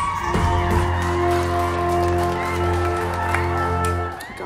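Music: a held chord over a low bass note, sustained and then cutting off near the end.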